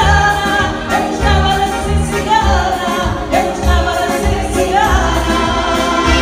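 A woman singing a traditional Portuguese folk song with accordion accompaniment, bass notes sounding in a steady dance rhythm underneath.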